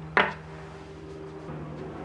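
A small 3D-printed plastic pump part set down on a wooden workbench with one brief tap, over a steady low hum.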